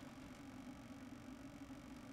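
Near silence: quiet room tone with a faint low steady hum.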